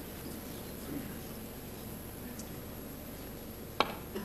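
A single sharp click of a snooker ball being struck near the end, over the faint steady murmur of a quiet arena audience.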